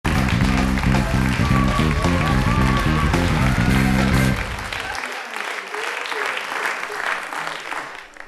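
A TV show's opening theme music with a heavy, rhythmic bass line, stopping about four and a half seconds in. A studio audience then applauds until the end.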